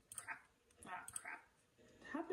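A few quiet computer mouse clicks while switching between videos, with faint low muttering in between.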